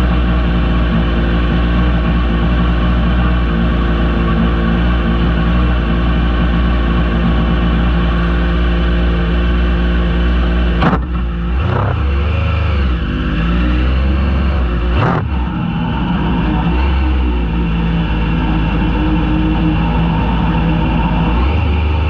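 Racing buggy's engine running steadily at idle, heard close up from the car itself, with two short sharp knocks near the middle.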